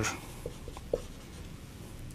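Marker writing on a whiteboard: faint strokes with a couple of short squeaks about half a second and a second in.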